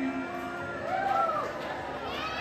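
Live band music in a quiet stretch: a held chord dies away near the start, with a few voices rising and falling from the room about a second in.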